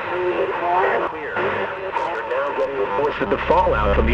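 Car radio seeking across stations: thin, crackly snatches of broadcast voices, cut off at the top like a radio speaker. A low rumble comes in about three seconds in.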